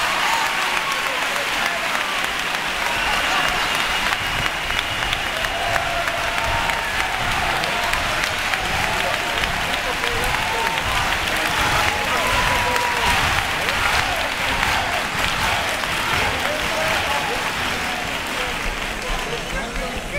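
A theatre audience applauding and cheering at length, with voices calling out through the clapping. It begins to die down near the end.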